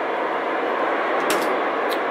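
Steady FM receiver static from a 2-metre amateur transceiver: the squelch is open on a channel with no station transmitting, so the speaker gives a loud, even hiss. Two faint clicks come about a second and a half in and near the end.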